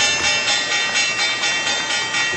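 Sustained, dense intro sound effect made of many steady high tones with a faint pulse running through it, cut off abruptly just after.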